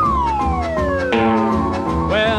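Western swing band's instrumental intro: one long note slides smoothly down in pitch over the band's steady chords.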